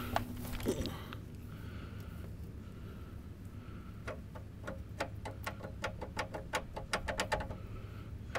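A steady low hum with a run of quick, light clicks or taps, about four a second, through the second half.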